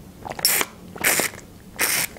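Drink sucked up through a straw from a small plastic pouch held close to the microphone: three short slurping pulls about half a second apart.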